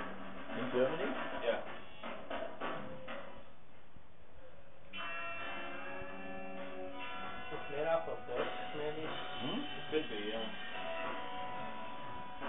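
Voices mixed with music: talking-like voices for the first few seconds, then from about five seconds in a held chord of many steady tones, with voices moving over it.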